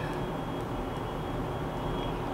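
Steady background hum and hiss with a faint high whine and no distinct sound events.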